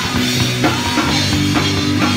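Rock band playing live: guitars and bass holding low sustained notes over a drum kit hit in a steady beat.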